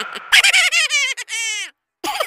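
Backing music stops, then a comic sound effect plays: a quick run of chirpy, bending notes that fall in pitch and end in a fast warble, cutting off just before the end.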